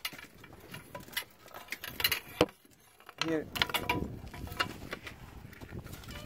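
A string of sharp clicks and knocks, like stones and grit knocking together, over the first two and a half seconds. A brief quiet follows, then a person speaks.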